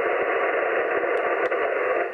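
Yaesu FT-710 HF transceiver's speaker hissing with steady band noise on 40-metre lower sideband, its digital noise reduction switched off. The hiss fills the narrow voice passband and carries a few faint clicks. The operator puts the S8 to S9 noise down to a distant thunderstorm.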